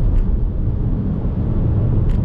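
Steady low road and tyre rumble of a car driving at highway speed through a road tunnel, heard from inside the cabin.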